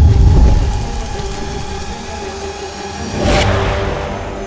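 Cinematic logo-sting sound design. A deep boom hits at the start and fades over about a second over a held musical drone, then a loud whoosh swells about three seconds in as the logo is revealed.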